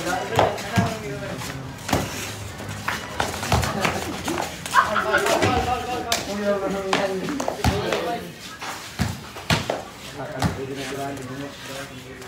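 Irregular thuds of a basketball and feet on a concrete court, mixed with players' shouting voices.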